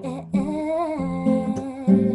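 A woman singing a melody over acoustic guitar, her voice sliding up and down across held guitar notes.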